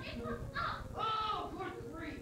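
Young stage actors' voices delivering dialogue, heard from the audience, with one loud, drawn-out exclamation about a second in.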